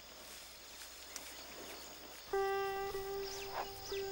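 Faint wild grassland ambience with a steady high insect drone. About two seconds in, sitar music begins on a long held note.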